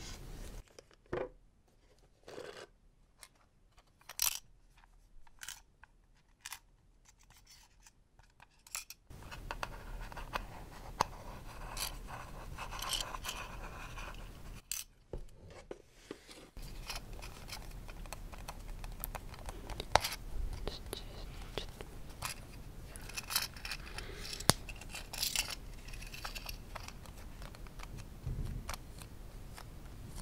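Fingertips and nails tapping and scratching on a small round plastic case held close to the microphone. At first there are a few separate soft clicks. After about nine seconds it becomes an almost continuous close scratching with many small clicks, pausing briefly near the middle.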